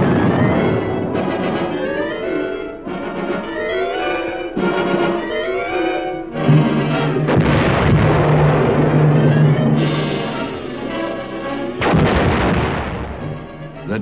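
Orchestral film score with brass, cut through by the heavy blasts of a 280 mm M65 atomic cannon firing. One blast comes about six and a half seconds in and trails off over a few seconds; another comes about twelve seconds in.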